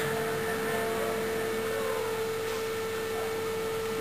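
A steady hum on one unchanging pitch over a constant hiss.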